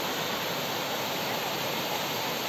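Narrow waterfall pouring down a rock face into a pool: a steady, even rush of falling and splashing water.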